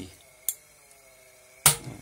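Two sharp metallic clicks from a 1978 Cadillac Eldorado windshield wiper motor assembly on a bench, a small one about half a second in and a louder one near the end, with quiet between.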